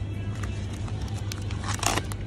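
Brief crinkling of a vacuum-sealed plastic packet of sliced ham as it is grabbed and lifted, loudest near the end, over background music with a steady low bass.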